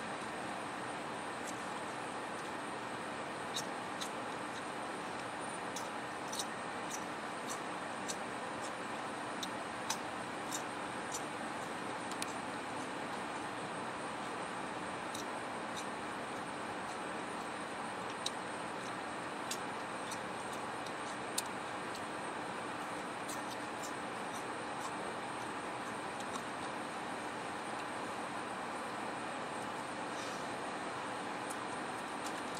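Steady roadside vehicle noise, engines idling and traffic, with a faint hum and a scattering of small sharp clicks.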